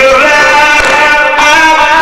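A man sings a Persian Shia mourning elegy (noheh) into a microphone. His voice is loud and amplified, moving through held, gliding notes.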